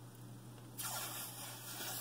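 Soft rustling hiss of a makeup compact or its packaging being handled, starting about a second in, over a low steady electrical hum.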